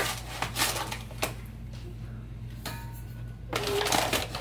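A metal measuring cup scooping granulated sugar out of a paper sugar bag: a few sharp clicks and scrapes with dry rustling of the bag, over a steady low hum.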